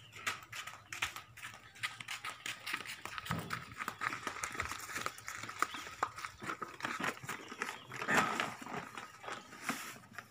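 Potted plants being handled and loaded into a truck: rustling, crinkling and frequent clicks and knocks from the leaves, the plastic planter bags and their frames, with a louder burst of handling noise near the end.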